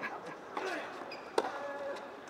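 A tennis ball struck by a racket with a single sharp pop about one and a half seconds in, the loudest sound, amid fainter knocks of the ball on the hard court and background voices.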